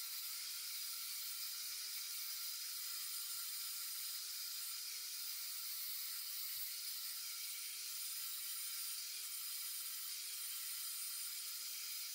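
Angle grinder with its guard removed, grinding the end of a notched steel tube: a steady whine with hiss, held at one even level throughout.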